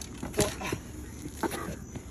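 A few scuffing footsteps and knocks on an asphalt road, the loudest about half a second in, with brief faint voices between them.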